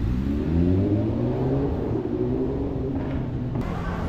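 A road vehicle's engine accelerating in street traffic: its pitch rises over the first second or so, then holds and slowly falls. Near the end the sound switches abruptly to a steady hum of traffic.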